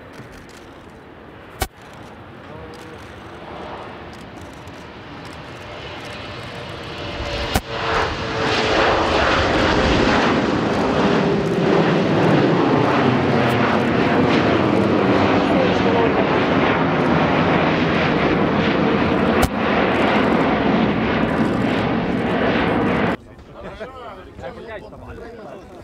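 Twin PowerJet SaM146 turbofan engines of a Sukhoi Superjet 100 at takeoff thrust. The sound builds over the first several seconds and is loud from about eight seconds in, with a falling tone as the jet passes and climbs away. It cuts off sharply near the end.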